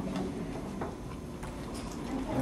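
Room noise with three or four light ticks, roughly two-thirds of a second apart.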